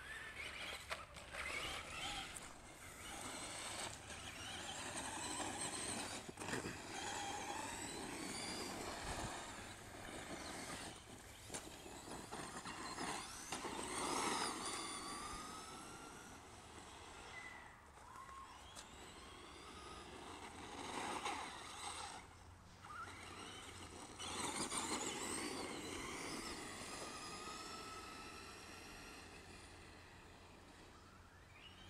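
Brushed electric motor of a Traxxas Stampede XL-5 RC truck whining as it drives, its pitch rising and falling repeatedly with the throttle.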